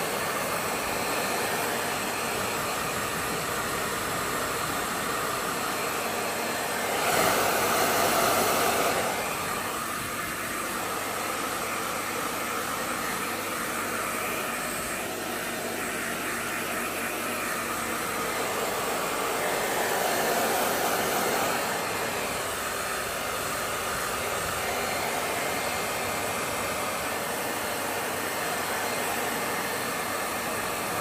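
Hair dryer running steadily while a puppy is dried after its bath. It grows louder twice for a couple of seconds, about a quarter of the way in and again about two-thirds in.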